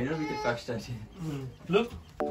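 Voices talking, some of them high-pitched with rising inflections.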